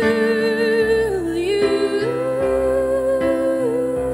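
A woman singing long held notes with vibrato over chords on a Yamaha Clavinova digital piano; a slow, tender ballad.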